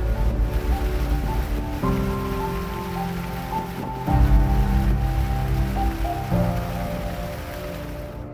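Background music: sustained chords that change about every two seconds, over a steady hiss.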